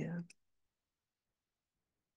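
A woman's voice finishing a word, followed by a short click, then dead silence.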